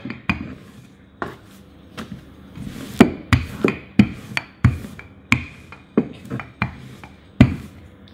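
Wooden handled rolling pin rolling dough out on a floured countertop: a rubbing roll with about a dozen irregular wooden knocks as the pin strokes back and forth, the loudest about three seconds in.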